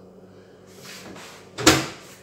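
A door being shut with one sharp clunk about one and a half seconds in, after some faint handling noise.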